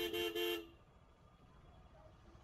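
A vehicle horn honking twice in quick succession, two short toots of a two-note horn, then faint street noise.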